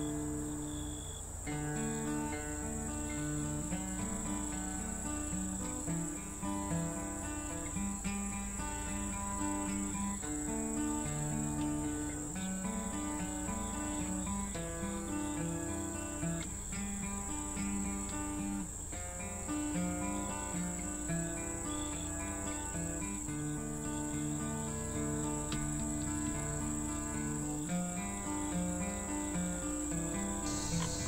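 Background music laid over a steady, high-pitched drone of insects such as crickets.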